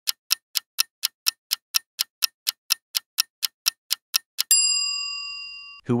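Countdown-timer sound effect: clock-style ticking at about four ticks a second, then a single bell ding about four and a half seconds in that rings on and fades, marking the end of the answer time.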